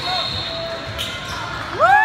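Basketball being dribbled on a hardwood gym floor among short sneaker squeaks. Near the end, as a shot goes up, a loud, high, held cry rises in.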